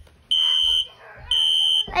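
Fire alarm beeping: a steady high-pitched beep, two half-second beeps about a second apart.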